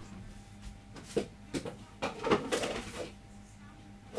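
A few scattered knocks and light clatter as a large mixing bowl is fetched and handled, the sharpest knocks about a second in and around the middle.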